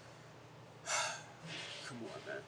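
A man takes one sharp, audible breath in about a second in, then breathes out more softly near the end.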